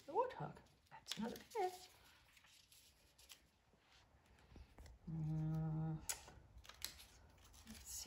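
A person's voice: short gliding vocal sounds in the first two seconds, then a held 'mmm' hum about five seconds in, while picking cards in a matching game. Between them, faint light taps of paper cards being turned over on a cloth.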